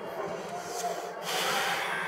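A person's loud, breathy intake of air, starting just over a second in and lasting most of a second.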